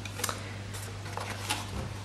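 Faint handling of a card gift box: a few light ticks and rubs of cardstock as the wrap slides over the inner box, over a steady low hum.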